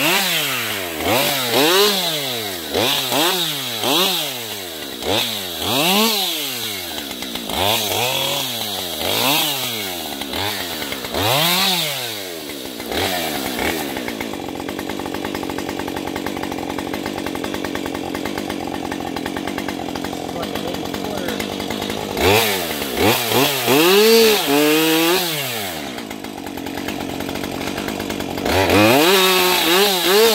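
Husqvarna 550 XPG two-stroke chainsaw cutting into a tree trunk, revved up and down over and over, about once a second. Around the middle it drops to a steady idle for several seconds, then revs up and down a few more times.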